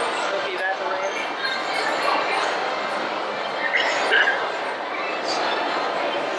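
Indistinct voices over a steady background of noise, with no clear words.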